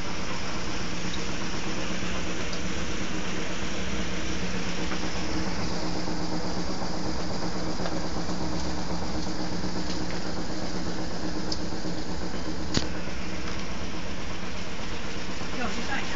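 Steady background hum and drone with indistinct voices, unchanging in level, and one sharp click about three-quarters of the way through.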